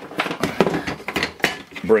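Quick clattering knocks and clicks of hard objects being handled, as the 3D printer's power supply is moved round to the other side.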